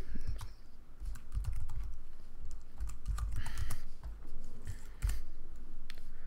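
Computer keyboard keystrokes, an irregular run of clicks, with soft low thumps underneath.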